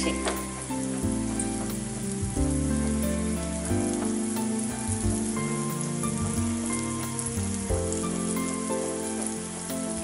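Floured eggplant cubes sizzling steadily as they fry in hot oil in a frying pan. Background music with sustained low notes plays underneath.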